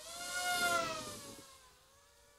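Electric motor and propeller whine of a small radio-controlled aircraft flying past. The whine swells to a peak about half a second in, then drops in pitch as it fades away by about a second and a half.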